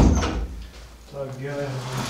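A wooden room door pushed shut with a thump at the very start, a short low rumble after it. About a second in, a man's voice sounds briefly, under a second long.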